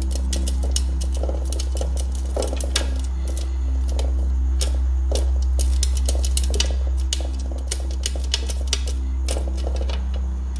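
Sun conure chick's claws and beak clicking and scratching against a clear plastic cage wall as it scrambles to climb, irregular sharp ticks several times a second. A steady low hum runs underneath.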